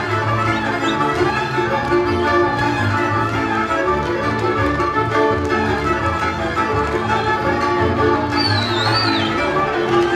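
Fiddle-led Hungarian folk music played by a string band, the fiddle melody over bowed accompaniment and a pulsing low bass.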